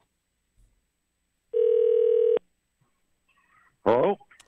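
Telephone ringback on an outgoing call, heard over the studio line: one steady ring a little under a second long, before the call is answered with a voice right at the end.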